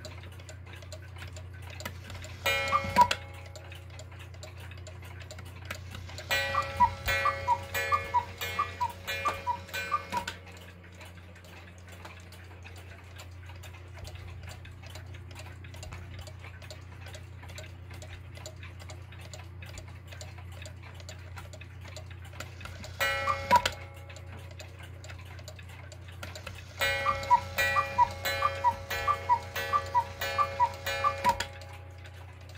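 A small 30-hour cuckoo clock ticking steadily while its hands are advanced, so that it calls: two-note bellows cuckoo whistles together with strikes on its small gong. There is a single call about two and a half seconds in, a run of calls from about six to ten seconds, another single call near 23 seconds, and a further run starting near 27 seconds.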